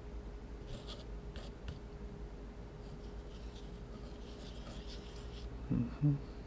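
Metal palette knife scraping and spreading paint on paper: a few short, faint scrapes in the first two seconds, then a longer stretch of soft scraping.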